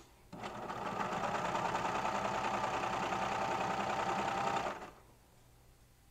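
Baby Lock Celebrate serger running at a steady stitching speed, overlocking a seam in knit fabric. It starts about half a second in, comes up to speed within a second, and stops about a second before the end.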